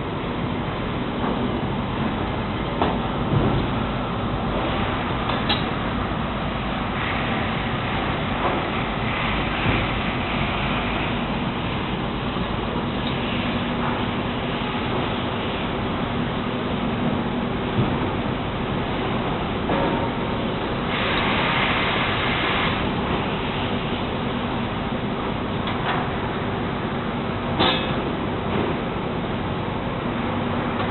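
Steady din of sawmill machinery running, with a low hum beneath and a few sharp metallic clanks. A brief hissing rise comes about two thirds of the way through.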